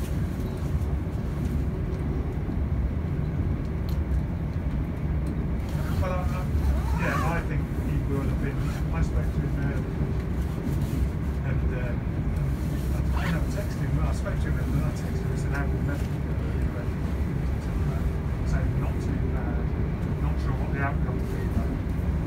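Steady running rumble of a Class 170 Turbostar diesel multiple unit, heard from inside the passenger saloon as the train travels along the line.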